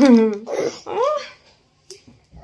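Wordless, sing-song voice sounds: a long gliding note that dies away, then one more rising-and-falling syllable, ending about a second and a half in, followed by a brief click.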